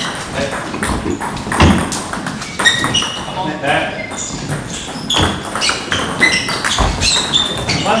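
Table tennis ball clicking off the paddles and the table during a rally, with voices talking in the hall.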